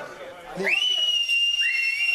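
Spectators' piercing whistles of support. One high whistle rises and is held steady from about half a second in, and a second, slightly lower whistle joins about a second later.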